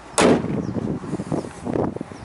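Steel hood of a 2007 Dodge Durango slammed shut and latching: one sharp bang a little after the start, followed by a trail of softer crackling noise.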